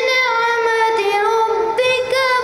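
A boy's voice reciting the Quran in a melodic tilawat style, drawing out one long held note that dips a little lower in pitch in the middle and rises again near the end.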